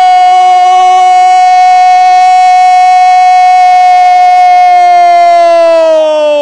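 A Brazilian football commentator's drawn-out goal cry, one long "gooool" held on a single high pitch for about six seconds and sliding down near the end, calling a converted penalty.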